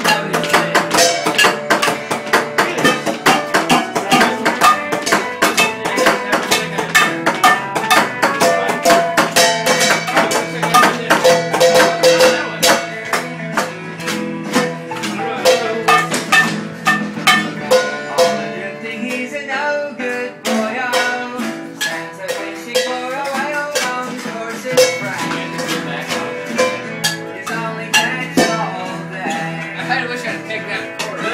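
Acoustic guitar strummed in a quick, even rhythm of chords, a little softer in the second half.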